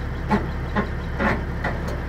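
Semi truck's diesel engine idling steadily, a low hum with faint regular ticks about twice a second.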